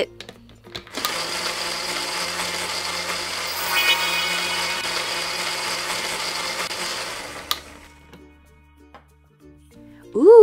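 Blender running steadily for about six and a half seconds. It starts abruptly about a second in, gets a little louder midway, and cuts off near the end.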